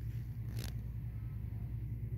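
Steady low rumble throughout, with one short rustle about half a second in.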